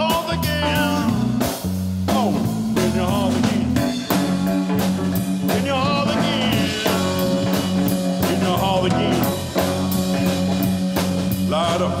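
A live band playing a blues-tinged rock song: drum kit keeping a steady beat under electric guitar and keyboard. The singer comes back in at the very end.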